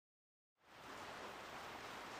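Dead silence for about half a second, then a faint, steady hiss from a lit brazing torch flame as bronze is brazed onto a steel chainstay.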